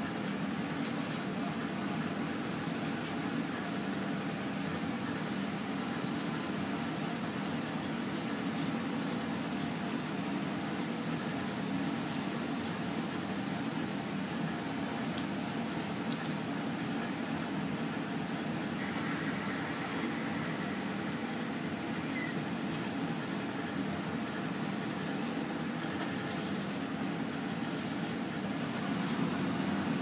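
Steady hum and rush of air from a biological safety cabinet's blower running.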